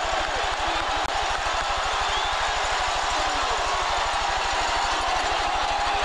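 A steady, rapid low buzz, like a motor idling, which cuts in suddenly at the edit. It sounds like hum on the old broadcast tape's audio track, over the steady noise of a stadium crowd.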